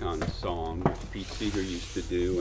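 People talking quietly at close range, with a short sharp click a little under a second in.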